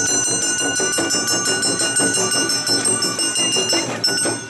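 Awa odori street band playing: the kane, a small hand-held gong, struck in a fast steady rhythm and ringing high and bright over the beat of the drums.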